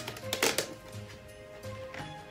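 Background music with steady notes, and a brief cluster of sharp crackling clicks about half a second in: cardboard being handled and an advent calendar door pushed open.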